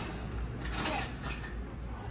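A few light knocks and clacks from a plastic toy kitchen being played with, over a low steady room rumble.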